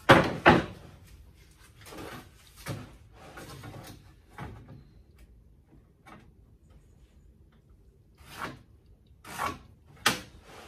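Wooden boards and tools handled on a wooden workbench: a few separate knocks and clatters, the two loudest at the very start about half a second apart, then lighter knocks spaced out with quiet stretches between.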